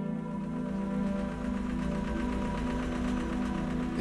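Ambient background music of sustained, held tones, over a low steady rumble with a fine rapid pulse that starts at the beginning.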